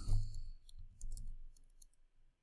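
Keys clicking on a computer keyboard as a word is typed: an irregular run of short clicks over a faint low hum.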